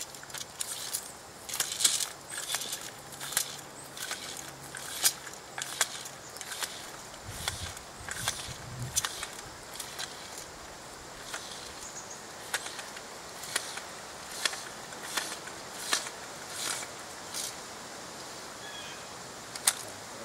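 Fiberglass measuring tape being pulled off its open reel and laid out on the ground: irregular sharp clicks and ticks, about one or two a second.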